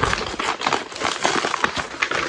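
Brown paper mailer bag being crinkled and torn open by hand: a dense run of crackling, rustling paper.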